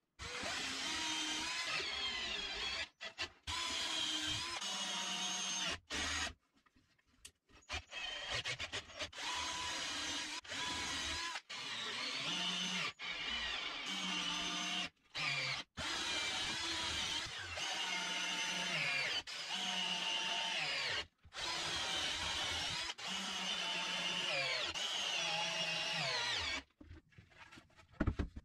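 Cordless drill-driver driving screws through a chipboard panel into pine blocks, in a series of runs of a few seconds each with short pauses between them. The motor's pitch sags near the end of several runs as the screws seat.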